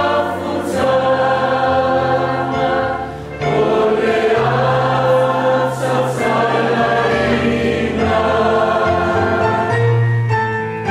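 A large group of men, women and children singing together as a choir, holding long notes, with a brief pause for breath about three seconds in.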